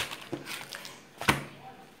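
Quiet handling of plastic-wrapped food packages on a wooden table, with one sharp tap a little past halfway as a package is set down.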